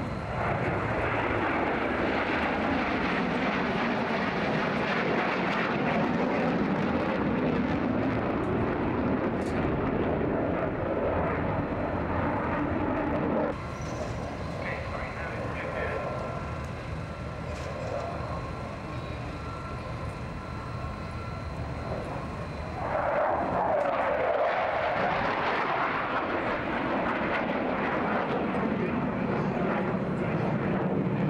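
Mikoyan MiG-29 Fulcrum jet engines roaring during a flying display. The loud roar drops abruptly about 13 seconds in to a quieter, more distant jet sound. It swells again near the 23-second mark with a sweeping rise and fall in pitch as a jet passes.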